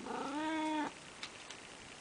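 Orange tabby cat giving a single short meow, a little under a second long; its pitch rises slightly, then holds until it stops.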